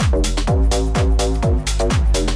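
Bass house music: a four-on-the-floor kick drum about twice a second, each hit dropping in pitch, under sustained synth chords and crisp hi-hats, with no vocals.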